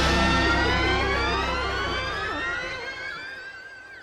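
The end of a live space-rock track fading out: the band's sound thins away while an electronic tone glides steadily upward in pitch over about three seconds, then levels off and fades.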